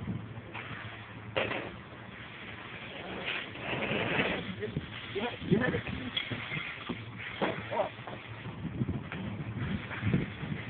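Indistinct voices talking over a steady low engine hum.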